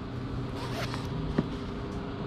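Zipper on a quilted fabric Vera Bradley purse being pulled open, a short faint rasp in the first second, followed by a single sharp click about one and a half seconds in.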